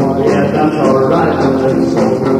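Rock'n'roll band playing in a rehearsal recording: electric guitars, bass and drums going steadily, with no words sung.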